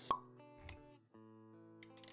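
Animated-intro sound design: a sharp pop sound effect just after the start, then a short soft thump, over faint background music with held notes.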